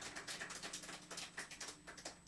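Faint, scattered clicks over a low steady hum, dying away toward near silence.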